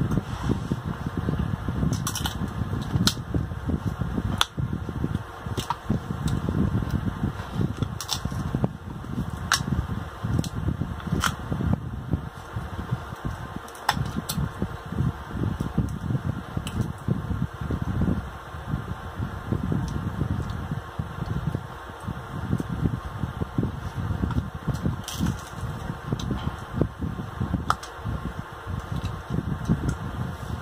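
Close-miked eating of crab meat: wet chewing and lip-smacking, with many short, sharp clicks and smacks scattered through it over a constant low rumble.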